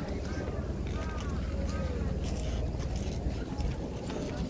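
Low, steady rumble of wind on the microphone, with a crowd of people talking in the background.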